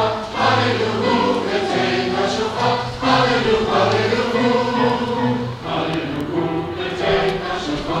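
Many voices singing together as a group, a slow song of long held notes.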